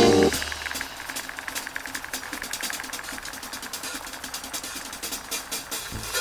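Steel blade of a Misono molybdenum-steel gyuto being stroked back and forth on a wet whetstone, a quick, even rhythm of gritty scraping strokes. Background music cuts off just at the start.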